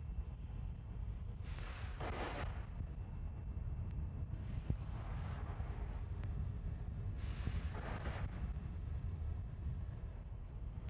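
Fuelled Falcon 9 rocket venting on the pad, with a steady low wind rumble on the microphone. Three rushing hisses come about three seconds apart, each lasting about a second.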